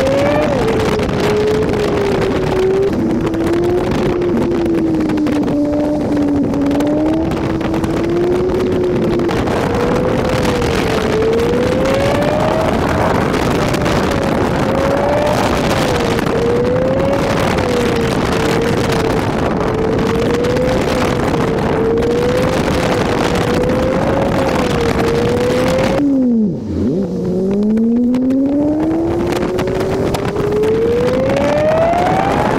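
Honda Civic Si engine pulling through a run of curves, its revs rising and falling with the throttle over steady road and wind noise. Near the end the revs drop briefly, then climb steadily as the car accelerates.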